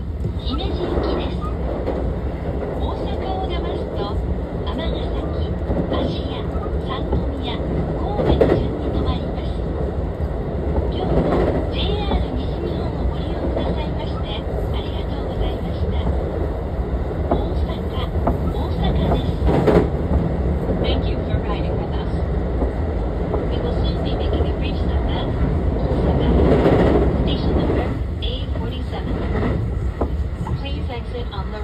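Running noise inside a JR West 223 series 2000-subseries trailer car: a steady rumble of wheels and bogies on the rail with scattered clicks, heard from the passenger cabin.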